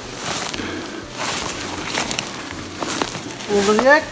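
Footsteps through moss and forest undergrowth: soft rustling crunches roughly once a second, at a walking pace. A person's voice rises near the end.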